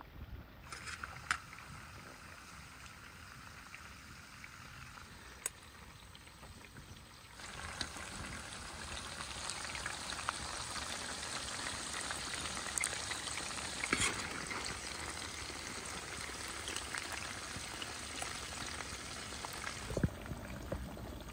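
Hot fat sizzling in a large wok as fried lamb pieces are lifted out with a wire skimmer, dripping; the sizzle gets louder about seven seconds in. A few light metal clinks of spoon and skimmer.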